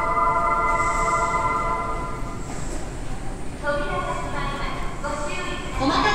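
An electric train running at the platform, its traction motors whining in several steady pitched tones over the rumble of the cars; the tones drop out about two seconds in and come back in pitch steps a little later.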